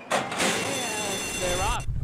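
Racetrack starting gate opening for a horse race: a sudden clang, then the start bell ringing for about a second and a half with a shout over it. Near the end the low rumble of hooves on the dirt begins as the field breaks.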